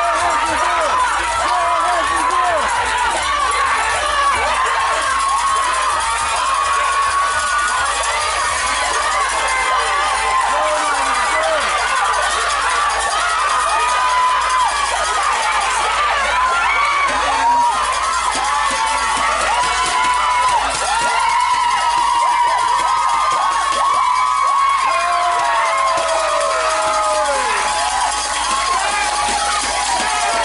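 A crowd of spectators cheering and shouting without a break, many voices calling over each other, with a few long, falling shouts near the end.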